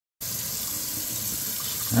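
Kitchen faucet running into a stainless steel sink, a steady rush of water that starts abruptly just after the beginning.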